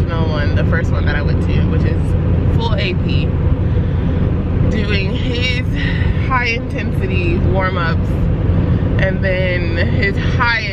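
Car cabin noise while driving: a steady low rumble of engine and tyres on the road, with a woman's voice coming and going over it.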